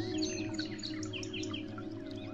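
Small songbirds twittering in many quick, short falling chirps, over the held, slowly fading notes of soft relaxation music.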